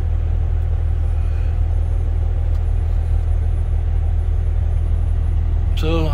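Semi truck's diesel engine running at a raised, steady idle during a parked DPF regeneration, a deep even rumble heard from inside the cab.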